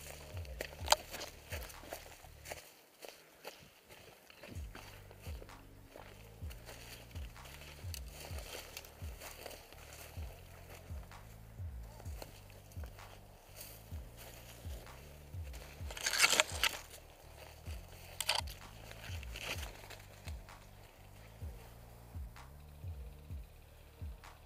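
Footsteps crunching and rustling through dry grass and leaf litter, an irregular run of crackles, with a couple of louder noisy bursts about two-thirds of the way through.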